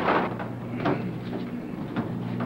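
Steady low drone of a transport plane's engines heard from inside the fuselage, with a brief rush of noise at the very start.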